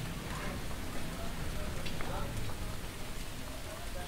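Steady rain falling, an even hiss with a couple of sharp drop-like ticks about two seconds in.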